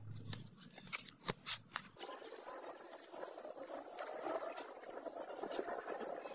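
600-grit sandpaper rubbed by hand along a steel katana blade: a steady scratchy rasp from about two seconds in, preceded by a few sharp clicks.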